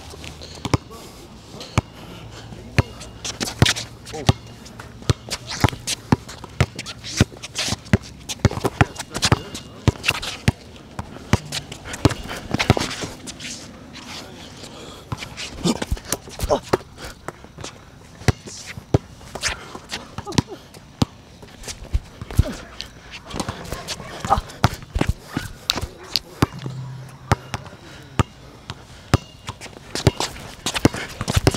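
Basketball bouncing on an outdoor hard court during one-on-one play: many sharp bounces at an uneven pace.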